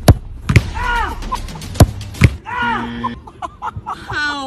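A football struck hard with a kick right at the start, followed by about three more sharp knocks over the next two seconds, with short vocal exclamations between them.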